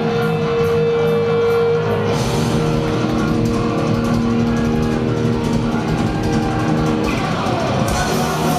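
Punk rock band playing live through loud amplifiers: distorted electric guitars and bass hold chords that change about two seconds in and again near the end.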